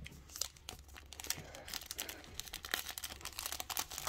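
Foil wrapper of a Panini Prizm football card pack crinkling as it is picked up and handled, a dense run of small, sharp crackles.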